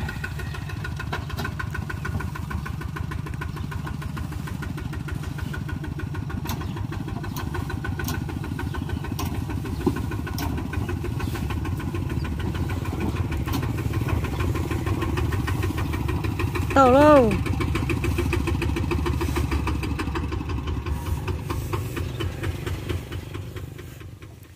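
Single-cylinder diesel engine of a two-wheel walking tractor, running steadily at low speed with a quick even pulse. The sound fades away near the end.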